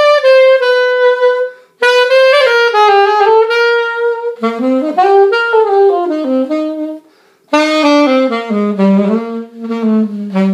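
King Super 20 alto saxophone played in a flowing melodic line. It pauses briefly twice for breath, and the tune drops into the horn's low register about halfway through.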